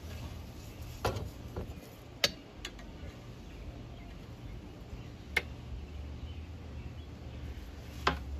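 A few sharp clicks and taps from handling a green garden stake and a small plastic plant clip, the loudest just after two seconds in, over a faint low hum.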